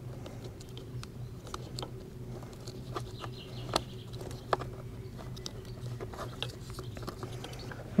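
Scattered small clicks and taps of fingers pushing crimped wire terminals and rubber seals into a plastic multi-pin connector housing, the two sharpest a little before and after the middle, over a faint steady low hum.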